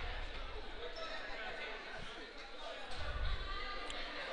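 Gymnasium ambience during a stoppage: a low murmur of crowd and player voices, with a basketball bouncing on the hardwood court a few times.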